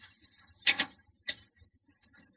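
Computer keyboard keystrokes: a few sharp key clicks while code is typed, with a quick cluster of clicks just under a second in and another single click about half a second later.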